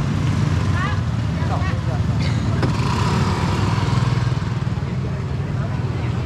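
Small motor-scooter engines running close by in slow, crowded street traffic, with a louder swell of engine noise about halfway through. Voices can be heard briefly.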